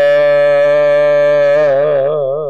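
A man's voice holding one long chanted note, steady at first and wavering in pitch near the end: the drawn-out close of the intoned heading of a Gurbani Hukamnama recitation.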